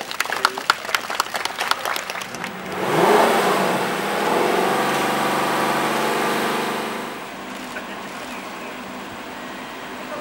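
Scattered hand clapping. About three seconds in, the Lexus LC500 patrol car's V8 starts with a rising rev, runs high and steady for a few seconds, and settles lower near seven seconds.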